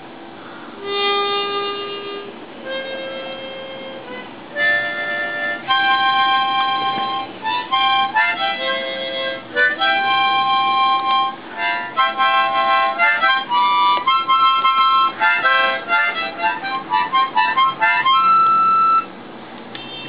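Ten-hole harmonica being played. It begins about a second in with a few held single notes, then moves into a run of short notes and chords that step up and down in pitch, and stops shortly before the end.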